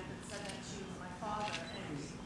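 Faint, distant speech from a person talking off-microphone, much quieter than the amplified voices around it, with the words not made out.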